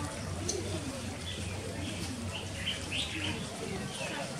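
Garden birds chirping: a cluster of short, high calls, mostly between about one and three and a half seconds in. A dove cooing lower down near the start.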